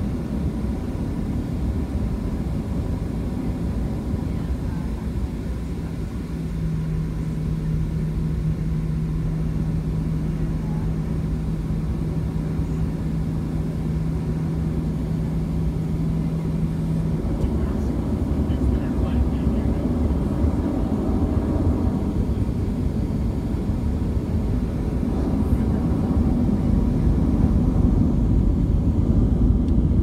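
Cabin noise of a Boeing 737-700 airliner moving on the ground: a steady low rumble of the CFM56 jet engines and airframe. A steady low hum lies over it for about ten seconds from around six seconds in, and the rumble grows louder in the second half.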